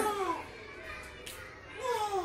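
A small child's voice in a quiet pause between loud calls: a brief falling vocal sound at the start and a soft rising one near the end, with low room sound between.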